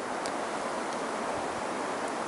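Steady, even hiss with no change in level, on a still, windless night.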